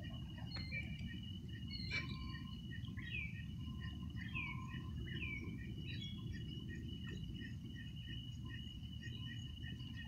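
Night-time chirping calls: a steady high-pitched trill runs throughout, with short chirps repeating about twice a second and a few curved, falling chirped calls a few seconds in, all over a steady low rumble.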